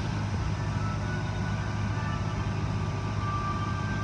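A steady low mechanical drone, even and unbroken, with a few faint thin tones above it.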